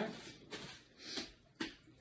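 Plastic poly mailer crinkling and rustling as it is pressed flat to push the air out, with a sharp tap about a second and a half in as the package is set down on the desk.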